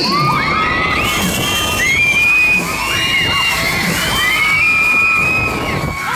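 Riders on a Superstar looping fairground ride screaming together as it swings over, many high overlapping screams rising and falling over a steady noisy background.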